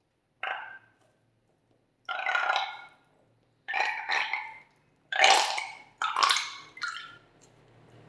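Slime and air squeezed out through the neck of a rubber balloon, the neck sputtering in a burp-like way in about six short bursts, a second or so apart, coming closer together near the end.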